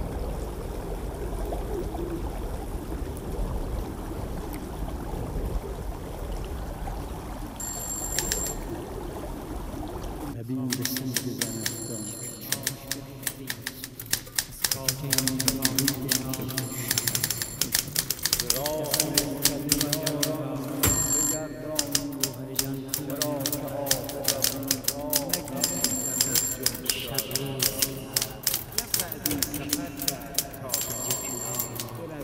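Busy office ambience: rapid, overlapping typewriter clatter with a hubbub of voices and a few short, high rings or beeps. It starts abruptly about ten seconds in, after a steady rushing noise.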